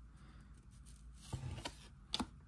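Faint handling of a small stack of cardboard baseball cards: a card slid from the front to the back of the stack, with a short soft knock about one and a half seconds in and a few light clicks near the end.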